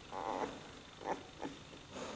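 Newborn Leonberger puppy making faint grunting sounds: one longer grunt at the start, then three short ones in the second second.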